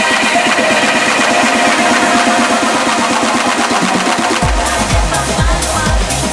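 Tech house DJ mix. For the first four seconds or so the bass and kick are filtered out, then they come back in about four and a half seconds in, with a steady kick about twice a second.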